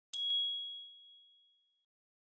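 A single bright chime for a channel logo: one sharp ding that rings on one high tone and fades out over about a second and a half.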